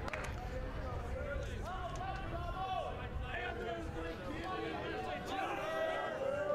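Ballpark ambience: scattered distant voices calling and chattering over a steady low rumble, with no nearby talk.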